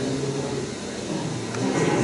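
Soundtrack of an archival film played over a PA loudspeaker in a hall, with a steady low tone and no clear speech or music, dipping in level about a second in.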